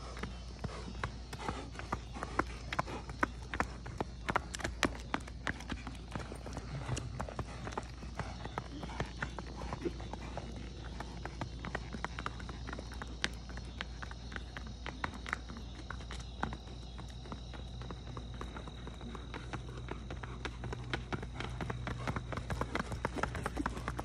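Paso Fino gelding's hooves on asphalt in its quick, even four-beat gait: rapid clip-clop hoofbeats, loudest in the first few seconds, fading as the horse moves away and growing again near the end as it comes back past.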